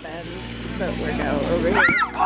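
Players' voices shouting across a field, with wind rumbling on the microphone; near the end a rising shout and a single sharp thump as a thrown rubber dodgeball strikes.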